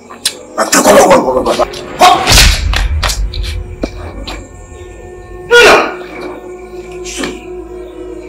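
Dramatic film soundtrack: a heavy thud about two seconds in, followed by a low rumble under a held music drone, with short vocal outbursts before and after it.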